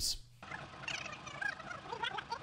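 Fast-forwarded audio: a high-pitched, garbled chatter of sped-up sound that starts about half a second in, after a brief dip.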